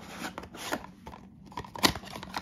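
Small cardboard box being worked loose and pulled out of its slot in a tightly packed cardboard advent-calendar case: light scraping and rustling of card against card, with one sharp click near the end.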